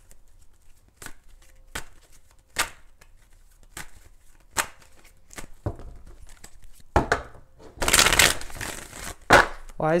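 A deck of tarot cards being shuffled by hand: a series of separate sharp card snaps and taps, then a longer run of shuffling near the end.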